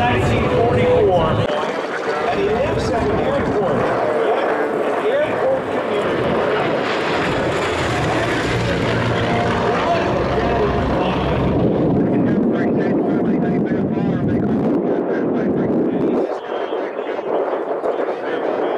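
The F8F Bearcat's 18-cylinder radial engine (Pratt & Whitney R-2800) running at power in a low flyby. The sound is full and loud, then turns duller after about twelve seconds as the plane pulls away and climbs. A loudspeaker announcer's voice is mixed in underneath.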